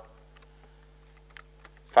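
Light typing on a computer keyboard: a few faint, scattered keystrokes over a steady low electrical hum.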